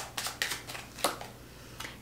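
Tarot cards being handled and drawn from a deck: several short, crisp card flicks and snaps, the sharpest about a second in.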